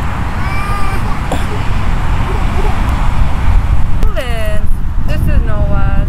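Short high-pitched calls and squeals from a young child, a few falling in pitch, around the middle and near the end, over a heavy steady low rumble of wind on the microphone.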